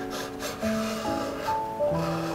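Background music with slow held notes, over the scraping of a kitchen knife blade drawn through soft rolled dough along a ruler and rubbing on the board beneath.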